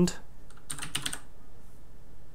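Computer keyboard typing: a single keystroke right at the start, then a quick run of keystrokes a little before a second in, as a short word is typed.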